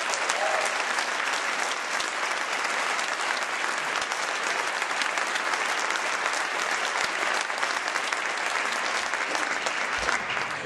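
Theatre audience applauding: a steady, sustained round of clapping.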